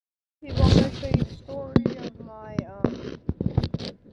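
A boy's voice close to the microphone, broken up by a string of sharp clicks and knocks from his hand handling the phone right at the microphone.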